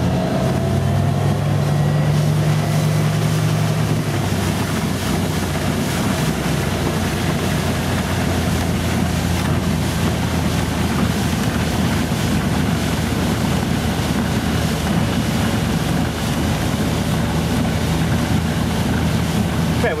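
Electric-converted Glastron speedboat running up onto a plane under power: a loud, steady rush of water along the hull and wind on the microphone, over a low drone from the drive that is strongest for the first four seconds and then eases as the boat settles at cruising speed.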